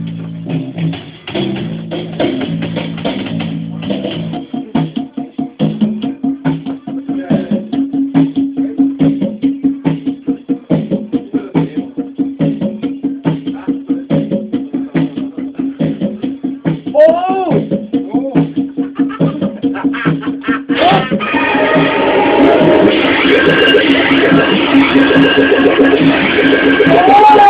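Electronic noise music from circuit-bent toys played live. A low tone steps between pitches for the first few seconds, then gives way to a steady low buzz chopped into rapid pulses, with a few rising-and-falling whoops around the middle. About three quarters of the way in, a louder, denser layer of tones joins.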